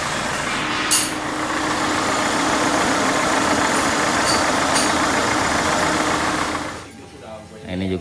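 Peugeot 206 TU3 petrol engine idling with its accessory fanbelt and pulleys spinning, heard close from under the car, with one short click about a second in. There is no fanbelt noise: the tensioner is no longer loose. The sound cuts off about seven seconds in.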